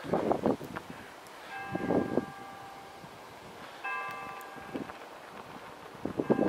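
A bell struck twice, about two seconds apart, each stroke ringing on for a second or more. Short muffled bursts of noise come near the start and again about two seconds in, louder than the bell.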